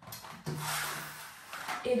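Long steel smoothing blade scraping across wet joint compound on a plasterboard wall, a sustained scrape starting about half a second in and lasting about a second. A short spoken word follows near the end.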